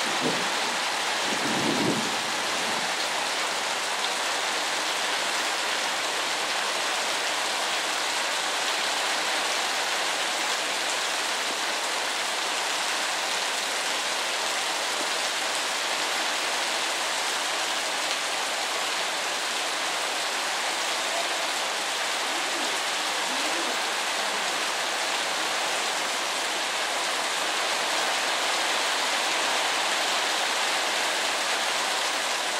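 Heavy rain pouring down, a dense, even hiss that holds steady throughout.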